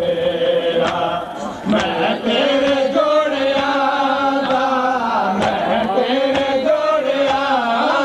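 Voices chanting a Muharram lament (nauha) in long, drawn-out melodic lines, with a few sharp knocks.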